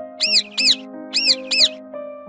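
Four short, high chirps in two quick pairs, each rising and falling in pitch, a cartoon bird-chirp sound effect over soft, steady background music.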